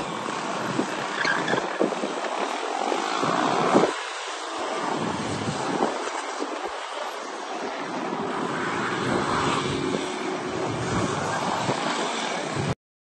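Several motorcycle engines running on a practice course, their revs rising and falling as the bikes ride, loudest just before four seconds in.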